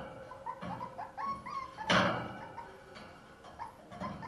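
West Highland White Terrier puppies yipping and whimpering in a run of short high squeaks, with one louder sharp sound about two seconds in.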